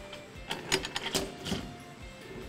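Metal clicks and knocks from the clamp knobs and glass manway lid of a stainless-steel brewery mash tun being unfastened and swung open, a quick run of sharp clicks in the middle of the moment.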